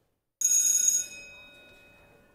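A bell rings loudly for about half a second, then rings out and fades over the next second and a half.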